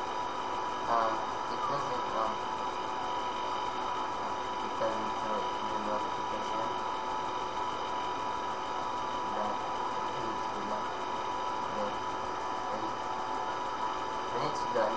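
Steady electrical hum and hiss, with a constant high tone, and faint indistinct voices now and then.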